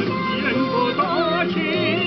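Music: a woman singing a sustained melody with wide vibrato over steady instrumental accompaniment.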